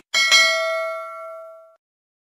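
Bell-ding sound effect of a subscribe animation's notification bell. It strikes twice in quick succession and rings out for about a second and a half.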